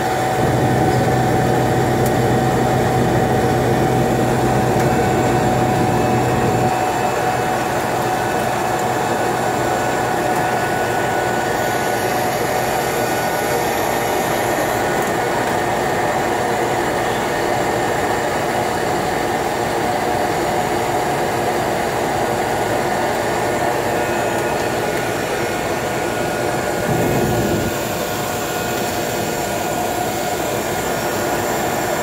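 GE H80 turboprop engine of a de Havilland Otter seaplane running steadily as the plane taxis on the water, a continuous drone with a high steady whine. A low hum in the engine sound drops away about seven seconds in.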